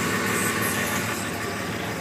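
Steady idle of the truck's 5.9L Cummins inline-six turbodiesel, an even, unbroken drone heard from inside the cab.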